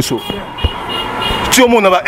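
Street traffic noise from a passing vehicle, with a faint steady high tone over it, during a pause in speech. A sharp knock about a second and a half in, then a man talks again.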